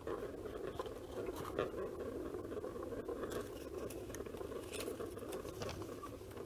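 Faint handling sounds of a plastic draw ball being twisted open and its paper slip pulled out and unrolled: a few soft clicks and rustles over steady room noise.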